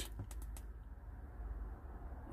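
A quick run of faint clicks from the Wurkkos HD20 headlamp's side button switch, pressed rapidly in the first half second: the triple-click that calls up the battery status check.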